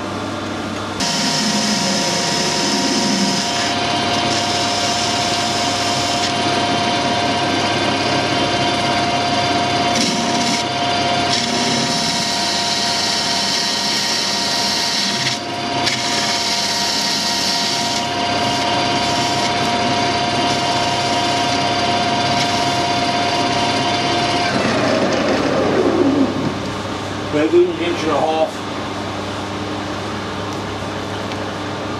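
Metal lathe running steadily with a four-jaw chuck turning a workpiece under a cutting tool, making a steady whine with a hiss over it. About 24 s in it is switched off, and the whine falls in pitch as the spindle runs down.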